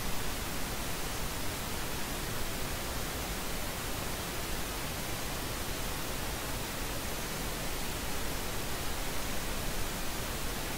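A steady, even hiss with nothing else in it: background noise on the recording.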